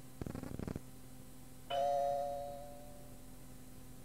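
Cueing chime recorded on an answering-machine outgoing-message cassette: a single bell-like ding a little under two seconds in, two close tones ringing and fading over about a second. It signals that the next outgoing message starts in three seconds.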